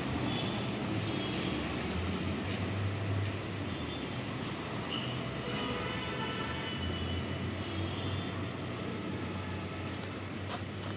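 Steady street traffic noise: a continuous low rumble of vehicles on the road.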